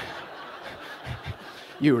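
Soft chuckling from an audience, heard as a low murmur of laughter, with a short click at the very start and a man's voice starting near the end.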